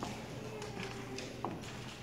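Scattered light taps and shuffles of children's shoes on a wooden gym floor, over a faint murmur of voices.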